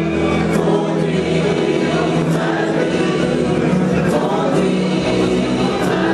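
Gospel choir singing in harmony over instrumental accompaniment with a steady bass line.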